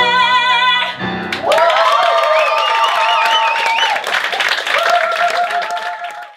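A singer's belted final note over the band's held chord, which cuts off about a second in; then audience applause with whoops and cheers, fading out at the end.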